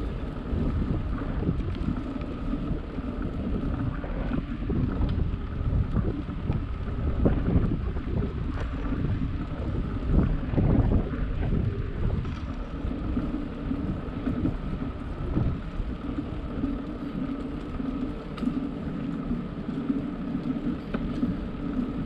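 Steady, gusty rush of wind on the microphone of a moving bicycle, with bicycle tyres rolling on smooth asphalt pavement.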